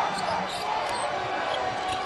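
Steady arena crowd noise with a basketball being dribbled on the hardwood court.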